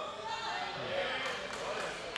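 A man's voice through a microphone and PA, echoing in a large gymnasium, with a few faint taps in the second half.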